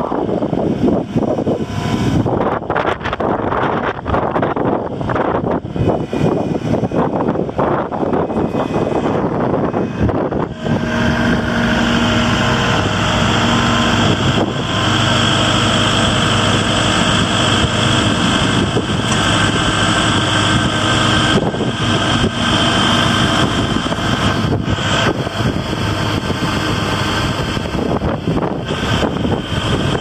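Kubota L5460 compact tractor's diesel engine running, at first under gusty wind noise on the microphone. About ten seconds in the wind drops away and the engine is heard close up, running steadily with an even hum.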